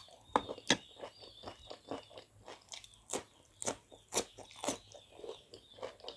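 Close-miked chewing of spicy aalu nimki, with crisp crunches as the fried nimki pieces break between the teeth. The two loudest crunches come in the first second, then a steady run of crunches about twice a second.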